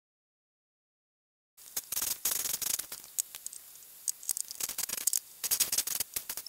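A spade bit boring into a pine board, a scratchy cutting noise full of crackling ticks, starting abruptly about a second and a half in.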